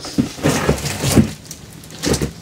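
Rustling and a few dull knocks from rummaging through a box of donated shoes, busiest in the first second or so, then dying down.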